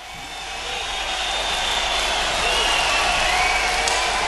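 Concert audience cheering, with scattered whistles, fading in over the first second and then holding steady before the song's band intro starts.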